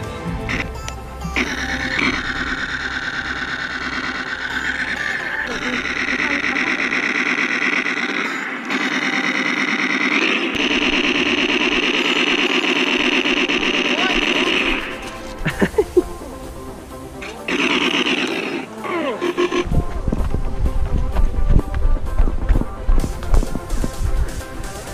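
Background music: long held notes, then a heavy beat that comes in near the end.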